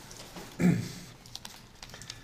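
Scattered light clicks and paper handling as a sheet of paper is laid on a document camera, with one short voiced sound about half a second in.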